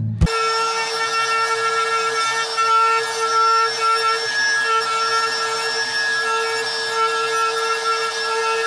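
Compact trim router running at speed and cutting into a wooden board, a steady high whine with the rasp of the bit in the wood, dipping slightly now and then as it is pushed through the cut.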